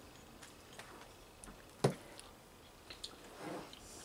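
Quiet eating at a table: faint chewing and small clicks as bread and fried meat are taken by hand from a plate, with one sharp click about two seconds in.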